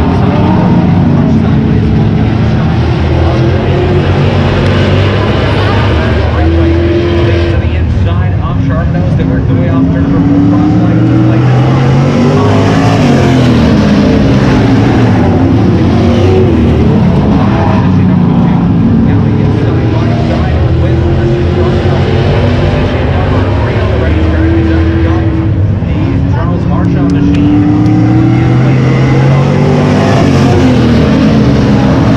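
A field of dirt-track stock cars racing around an oval. Their engines run loud throughout, the pitch rising and falling again and again as cars accelerate, lift for the turns and pass.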